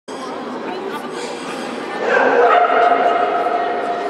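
A dog barking among voices in a large, echoing hall. About halfway in, a louder steady held tone rises over them and becomes the loudest sound.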